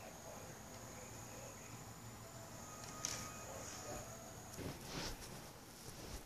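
Quiet room noise with a faint steady high whine, a single sharp click about halfway through, then a few rustling bumps near the end as a person moves right up to the camera.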